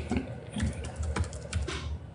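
Typing on a laptop keyboard: rapid, uneven key clicks.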